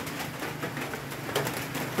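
Steady typhoon rain falling, with a faint low humming tone underneath through the first part.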